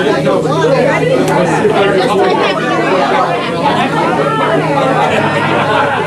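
Several people talking at once in a busy room: overlapping conversation and chatter.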